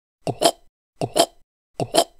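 Chewing sounds: three quick double chomps, about one every three quarters of a second.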